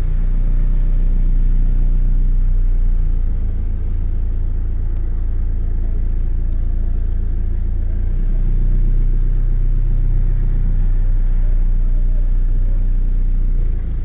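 A motor vehicle engine running steadily close by, a continuous low hum that shifts slightly about eight seconds in, with faint voices in the background.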